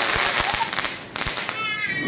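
Fireworks going off: a dense crackling hiss with scattered sharp pops for about the first second, fading out. Near the end comes a high, falling tone.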